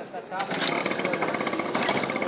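A fast, even buzzing rattle with a high ringing tone in it, starting about half a second in.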